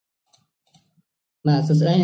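Two faint computer-mouse clicks about a third and three-quarters of a second in, over near silence, then a man's voice starts speaking loudly about halfway through.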